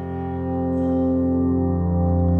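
A sustained chord from the Pure Upright iOS sampled-piano app, its sound morphed between the 'Cinematic' and 'Reverse' presets. The held notes swell louder over the first second, then ring on steadily.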